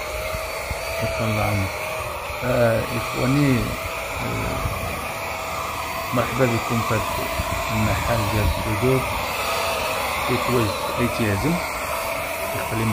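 Handheld electric paint spray gun running steadily with a whine while spraying paint onto a steel gate panel. Men's voices talk on and off over it.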